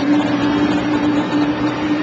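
Street traffic of minibuses and cars, engines running, starting abruptly, with a steady hum-like tone held underneath the traffic noise.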